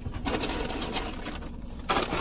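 Paper fast-food bag rustling and crinkling as it is handled, with a louder crackle near the end.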